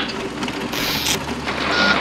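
Sound design for an animated particle intro: a dense, grainy rushing noise over a steady low hum, with a brighter hiss about a second in.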